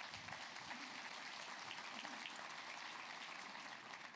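Audience applauding: a steady clatter of many hands clapping that eases off slightly near the end.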